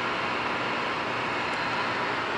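Steady electrical static with a faint hum from a lobby full of neon tube lights, an even hiss that holds at one level throughout.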